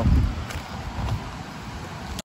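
Wind noise on the microphone with a low rumble and a couple of faint clicks.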